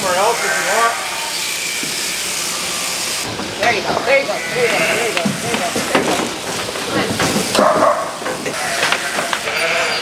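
Sheep bleating, wavering calls at the start and again around four to five seconds in, over a steady background hiss.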